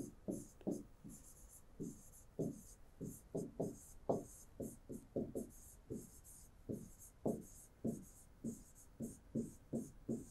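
Handwriting strokes on an interactive whiteboard screen: a quick run of short, scratchy squeaks, about three a second, as a word is written out.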